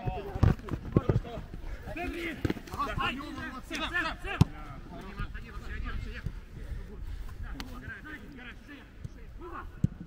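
Footballers calling out to each other on an outdoor pitch, with a few sharp thuds of a football being kicked, the loudest a little after the middle.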